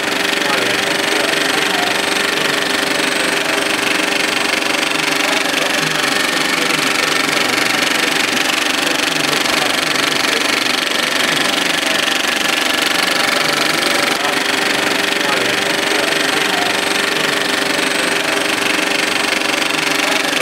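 70mm film projector running, a steady mechanical clatter with a constant low hum.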